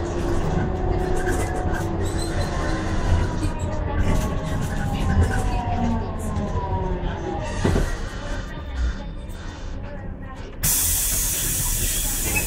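Trolleybus running and slowing, its electric drive whining in several tones that fall in pitch as it brakes, over a steady rumble. It comes to a stop, and near the end a sudden loud hiss of compressed air starts.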